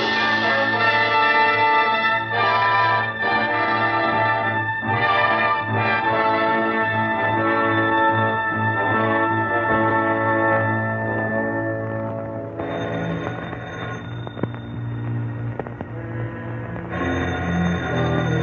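Orchestral film score with sustained brass-coloured chords that change every second or two, dropping to a quieter passage about twelve seconds in.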